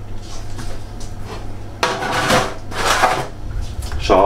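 Kitchenware being handled: a metal baking tray lined with greaseproof paper and a spoon and bowl, with a rustling, scraping clatter for about a second midway. A steady low hum runs underneath.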